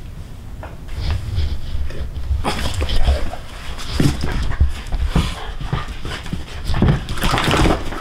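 A small dog's breathing and vocal sounds while it is handled after a chiropractic neck pull. Repeated low thuds and rustling start about a second in, and the sound grows busier and louder from about halfway.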